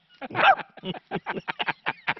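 A man imitating a dog's bark with his voice, one loud bark about half a second in, then a quick run of laughter.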